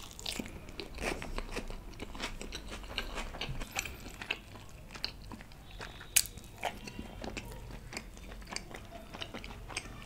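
Close-miked mouth eating sounds: a person chewing Indian flatbread and curry, with many small wet clicks and crackles. A sharper crunchy bite about six seconds in is the loudest sound.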